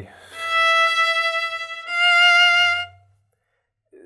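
Solo violin bowing two sustained notes, the second slightly higher and louder at its start: a bow change that chops up the line, the new bow sounding accented.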